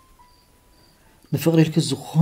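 A quiet pause with two faint, short, high cricket chirps, then a man's voice begins speaking about a second and a half in.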